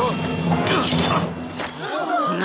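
Cartoon soundtrack: a man's voice making non-word sounds over a low steady tone, with a couple of short, sharp noisy strokes a little over half a second in.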